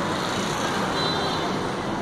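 Steady city street traffic noise: an even wash of passing road vehicles.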